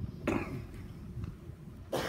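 A person coughing in a quiet hall: one short cough about a quarter second in, and another sudden burst near the end.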